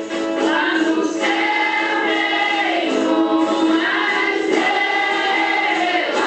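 Music with a group of voices singing in chorus over a steady held low note.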